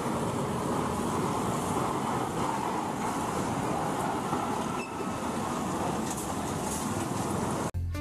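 Scania fuel tanker truck's diesel engine running steadily, heard as an even noise with traffic and road sound around it.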